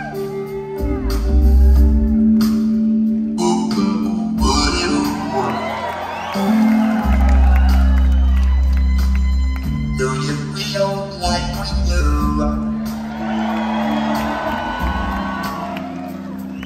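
Live rock band playing: an electric guitar leads with bending, wavering notes over sustained bass notes and drums, with the audience cheering.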